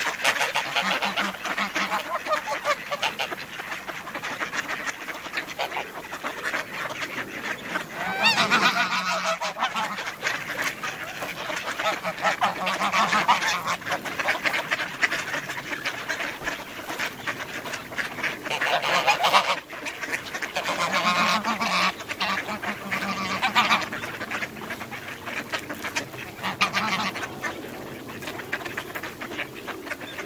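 A large flock of mallard ducks and domestic geese calling all at once in a continuous clamour of quacks and honks, swelling into louder bursts several times.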